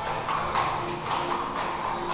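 Horse hooves clip-clopping in a steady rhythm, over soft background music with held notes.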